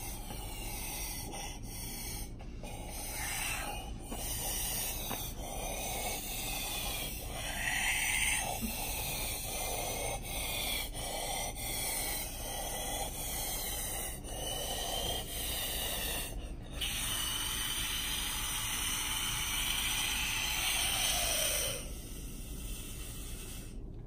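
Children blowing air hard into stretchy balloon balls: long rushing exhalations pushed into the balloons, broken by short catch-breath pauses, with one long steady blow near the end.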